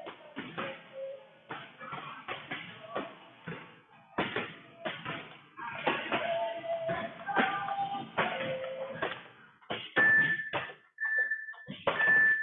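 Background music playing in the gym: a song with a vocal line and a steady run of beats, and a few held notes near the end.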